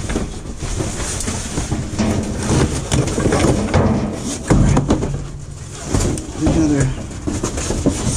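Trash being rummaged through by hand inside a dumpster: cardboard boxes, plastic bags and picture frames shifted, rustling and knocking against each other. A man gives a few low hums or murmurs.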